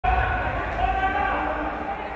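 A drawn-out voice echoing in a large hall, over low thuds.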